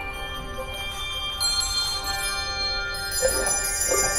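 Handbell choir playing: chords of ringing bells that sustain and overlap, with fresh strikes about a second and a half in and again near the end.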